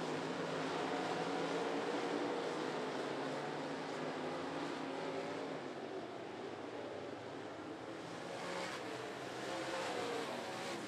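Limited late model dirt-track race cars running at speed around the oval, several engines blending into a steady drone whose pitch wavers up and down as they pass through the turns.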